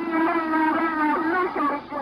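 A woman's voice in a radio transmission recording, speaking Russian in drawn-out, wavering syllables. This is the 'Lost Cosmonaut' recording, said to be a cosmonaut reporting heat and flames during re-entry.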